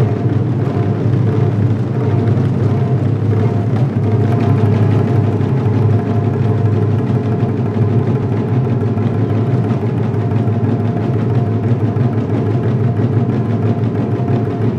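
Ensemble of Japanese taiko drums (tacked-head nagado-daiko) struck with wooden bachi sticks by several players at once: dense, fast, continuous drumming at an even, loud level with a deep low boom.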